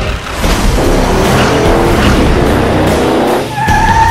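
A van arriving and skidding to a stop, its tyres squealing, over music; a steady high squeal comes in near the end.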